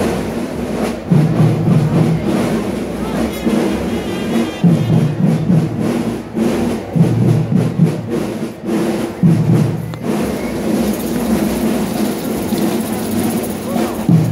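School drum-and-bugle marching band (banda de guerra) playing, with heavy low beats about every two seconds and sharp drum strikes in between.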